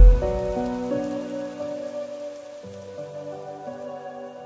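The song's outro: soft held keyboard chords that change pitch a few times and fade out after the last beat, over a faint hiss.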